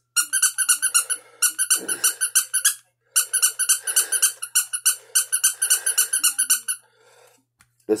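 A small handheld novelty toy making rapid, high-pitched squeaky chattering in five bursts with short gaps between them, standing in for a cat's voice.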